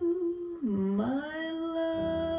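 Recorded vocal music playing over loudspeakers: a singer's long held note that drops in pitch about half a second in, slides back up about a second in, then holds steady.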